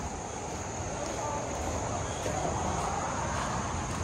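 A vehicle going by on the road, a steady rush of engine and tyre noise that builds slightly through the middle.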